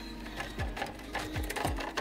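A small geared electric motor, likely the roof vent's, running with rapid mechanical clicking, and a few short low falling tones about half a second in and near the end.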